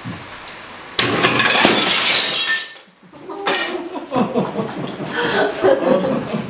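Glass smashing: a glass-fronted box frame breaks with a sudden crash about a second in, followed by shards clattering down for about two seconds. A second clatter follows, then people's voices.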